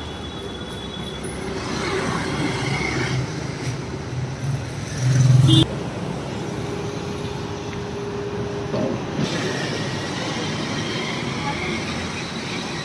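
City street traffic noise from passing and idling vehicles. About five seconds in, a louder low rumble lasts under a second and cuts off suddenly.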